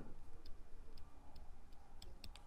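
Faint, irregular light ticks of a stylus on a writing tablet as words are handwritten, about five small taps spread over two seconds, over a low steady hum.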